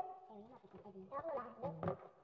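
Men's voices talking quietly, the words unclear.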